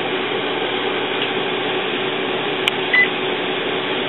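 Steady background hum and hiss, with a click and then a single short, high key beep from the Epson WorkForce printer's control panel about three seconds in, as a menu button is pressed to open the ink-levels screen.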